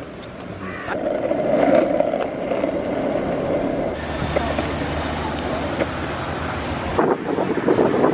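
Skateboard wheels rolling over asphalt, a continuous rolling noise that shifts to a steadier, lower hum about halfway through.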